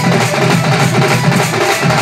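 A drum band of many strapped-on hand drums beating a fast rhythm together, with a held melody over the drumming.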